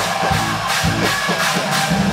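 A live mathcore band playing loud: distorted electric guitars and bass under drum hits and crashing cymbals.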